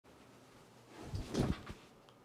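A person settling into an office chair: a short cluster of soft knocks and rustling about a second in, loudest about halfway through.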